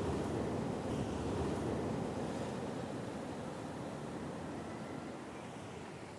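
Ocean surf washing on a rocky shore: a steady rush that slowly dies away.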